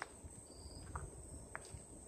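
Faint night insects giving a steady, high-pitched chirring, with a few soft clicks.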